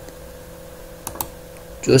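Two sharp clicks in quick succession about a second in, from a computer mouse button pressed and released, over a faint steady hum.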